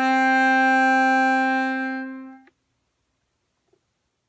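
Bandoneon, left-hand side, holding one long note that tapers off and stops about two and a half seconds in, ending a left-hand-alone exercise; then near silence.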